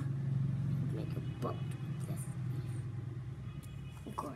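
A steady low engine rumble that slowly fades, with a brief faint voice sound about a second and a half in.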